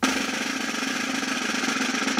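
Snare drum roll played with wooden drumsticks on a metal-shelled snare: a fast, even roll at a steady level.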